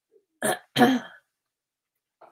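A woman clearing her throat: two short bursts in quick succession about half a second in.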